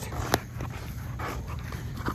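A dog making sounds as it tugs at a rope toy, with one sharp click about a third of a second in.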